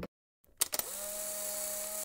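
A steady electronic-sounding whir begins about half a second in, after a moment of dead silence. It has a low hum and a higher tone that slides up briefly and then holds, over a hiss.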